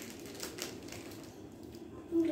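Faint, scattered light clicks and taps over quiet room hiss.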